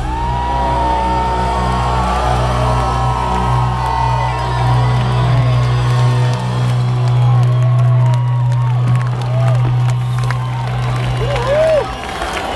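A live rock band through a large PA holds one long low chord as the song ends, heard from within a cheering crowd. Fans whoop and scream over it, most in the second half. The held chord stops near the end.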